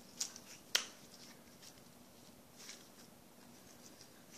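Slime being stretched and kneaded by hand, giving a scatter of small clicks and pops, the sharpest about three quarters of a second in.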